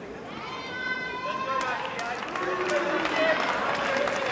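Indistinct voices around a tennis court: a high-pitched voice held for about a second near the start, then a mix of untranscribed talking and crowd murmur that grows louder.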